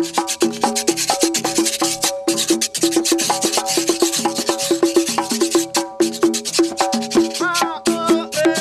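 Gourd güiro scraped in quick rhythmic strokes over panderetas, plena frame drums, which keep a steady rhythm of ringing, pitched hand strikes. The scraping thins out about six seconds in, leaving mostly the drums.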